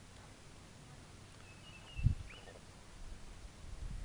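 A short bird call about two seconds in, a brief high note and then a quick falling whistle. A sharp low thump comes at the same moment and is the loudest sound, and low rumbling follows near the end.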